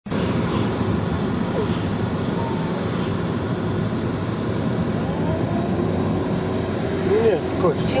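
Steady road and engine noise inside a moving car's cabin, with faint voices under it; a voice comes in near the end.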